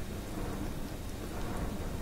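Steady, even background noise, a faint hiss with no distinct events.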